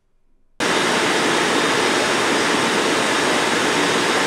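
Loud, steady hiss of noise on the recording, like static, that starts abruptly about half a second in and holds an even level throughout, with no pitch or rhythm.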